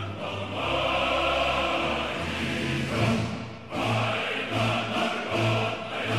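Background choral music: a choir singing long held chords. A low note starts pulsing regularly about four seconds in.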